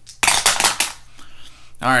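Two dice tumbling down a wooden dice tower and rattling into its tray, a quick clatter of many clicks lasting under a second.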